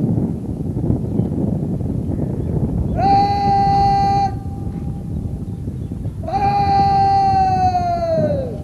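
A parade commander shouting two long, drawn-out drill commands, each held on one high pitch for over a second. The second one trails off with a falling pitch. A steady low background rumble runs underneath.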